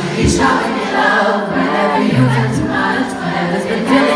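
Live pop song heard from within the audience: a woman singing into a microphone over a band with a deep bass note, many voices joining in.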